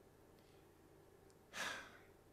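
Near silence, then a man's single short, audible breath, a sigh, about a second and a half in.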